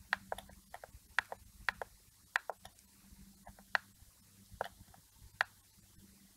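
Computer mouse buttons clicking at an irregular pace, some clicks in quick pairs like a press and its release, as a brush is dabbed over an image. A faint steady low hum runs underneath.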